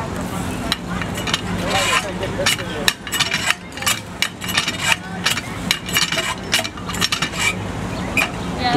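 Cast-metal hand water pump being worked, its handle and linkage clanking and clicking several times a second as it is pumped up and down. The pump may be broken and is giving little or no water.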